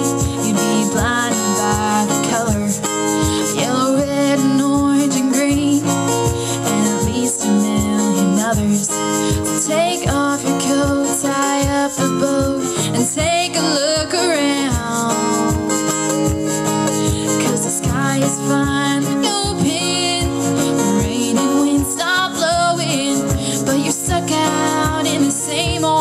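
Acoustic guitar strummed steadily under a woman singing a slow country song, performed live through a microphone and PA.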